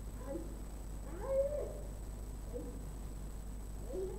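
A woman's faint, high whimpering moans: a few short cries that rise and fall in pitch, the longest about a second in.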